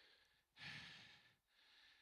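A man's single audible breath into a handheld microphone, starting about half a second in and lasting just under a second, amid near silence.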